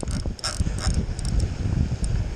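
Size-8000 spinning fishing reel being worked by hand, giving irregular mechanical clicks and gear noise, under heavy wind buffeting on the microphone.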